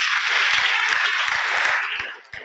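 Audience applauding, a dense steady clapping that dies away at the end.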